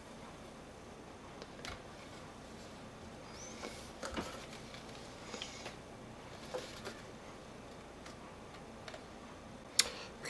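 Faint handling noise of a bicycle frame being turned over by hand: a few scattered light knocks and rustles, with a sharper click near the end.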